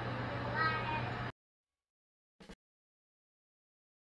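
A short high-pitched call that rises and falls in pitch, of the kind a cat's meow makes, over a steady low hum. About a second in, all sound cuts off abruptly to dead silence, broken only by one brief blip.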